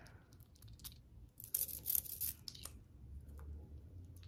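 A perfume atomizer spritzing onto skin: a few quick, hissing sprays close together about halfway through, with faint clicks of the bottle being handled before them. The bottle is a 30 ml Dolce & Gabbana The Only One.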